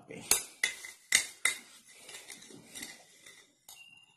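Metal spoon clinking and scraping inside a glass jar while scooping from it: four sharp clinks in the first second and a half, then lighter taps and scraping, and a short ringing clink near the end.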